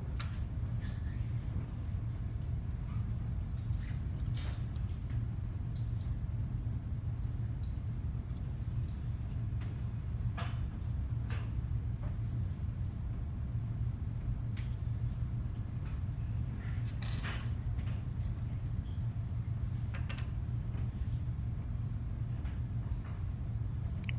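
Scattered light clicks and taps of a metal wax instrument against a stone dental cast as wax is laid into an undercut, a few seconds apart, over a steady low hum.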